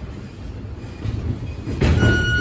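Boxers' footwork thudding and rumbling on the ring floor during sparring, with glove punches landing, growing louder about a second in and peaking in a heavier thump near the end.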